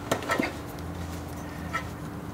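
A pause in speech filled by a steady low hum in the room, with a few faint clicks in the first half second.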